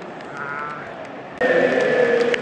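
Football stadium crowd singing, with long held notes over the general noise of the stands. It jumps suddenly louder about one and a half seconds in.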